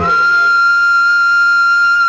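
A flute holds one long high note in a Tamil film-song interlude, sliding up into it at the start and then held steady, with the rest of the band dropped away beneath it.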